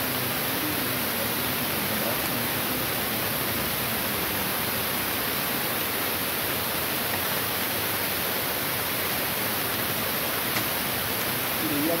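Steady, even hiss of background noise throughout, with a faint voice in the background.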